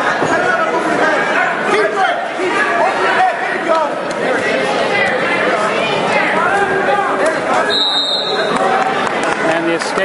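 Spectators in a gymnasium talking and calling out, many voices overlapping in an echoing hall. A short, high steady tone sounds about eight seconds in.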